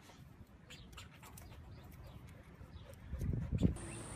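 A pet scrabbling and scuffling as it tries to free itself from where it is stuck: faint scattered clicks at first, then a louder low scuffle near the end.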